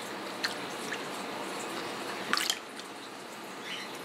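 Whey dripping and trickling back into a metal pot as a large mass of mozzarella curd is lifted out on a spoon, with one louder, sharper sound a little past halfway.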